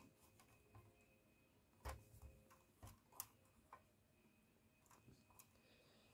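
Near silence broken by a few faint, short clicks and taps, the loudest about two seconds in, as fingers work the plastic roof ladder of a die-cast Siku Mercedes-Benz Zetros fire engine model.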